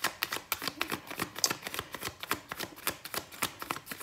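A deck of tarot cards being shuffled by hand, giving a quick, irregular run of soft card clicks and flutters.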